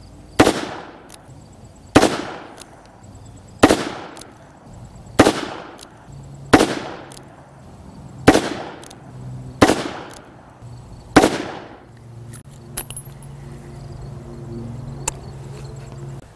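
Rock Island Armory AL22M revolver in .22 Magnum firing eight shots of Hornady 30-grain V-MAX, evenly spaced about a second and a half apart. Each shot is a sharp crack with a short decaying tail. A few faint clicks come near the end.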